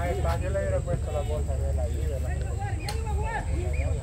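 Indistinct men's voices talking and calling out across an open football pitch, over a steady low rumble, with two brief clicks.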